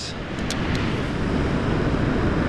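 Steady wind rumbling on the microphone over the wash of surf on a beach, with a couple of faint clicks about half a second in.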